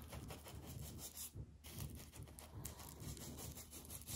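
Faint scratching and rubbing of paintbrush bristles against a textured spackled ceiling as the brush is shaken along the ceiling-wall edge to cut in paint.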